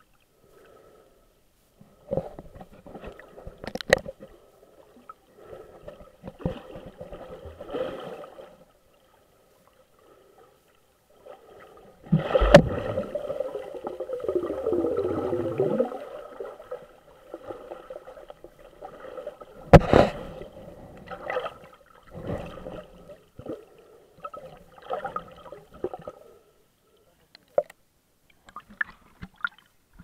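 Muffled underwater sound through a waterproof camera housing: irregular gurgling and sloshing of water, with a few sharp knocks, the loudest about 12 and 20 seconds in.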